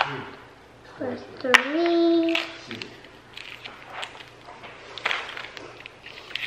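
A child's voice giving one short held note that rises and then holds, set among light clicks and rustles of plastic toy pieces and wrappers being handled. A sharp click comes right at the start.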